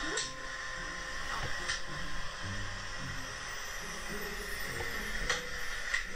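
Faint, muffled voice fragments buried in steady hiss: a low-quality bedroom audio recording of a sleeping woman's talking being answered by another voice, played back.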